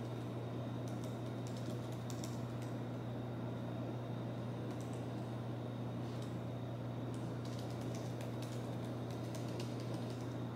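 Light typing on a laptop keyboard, short runs of key clicks that are busiest in the last few seconds, over a steady low hum.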